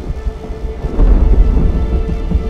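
Film-trailer sound design: a deep boom about a second in and a low rumble under a held musical drone.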